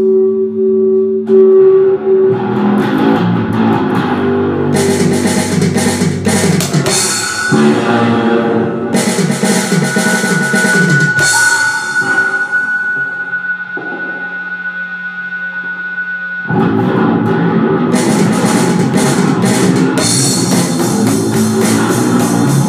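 Black metal band recording with drums and distorted guitars playing. Around the middle it thins to a quieter passage with one held high note, then the full band comes back in suddenly about sixteen seconds in.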